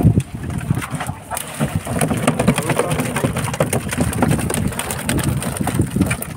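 Working noise on a small fishing boat with a net aboard: a low steady rumble under many quick clicks and knocks, with no single sound standing out.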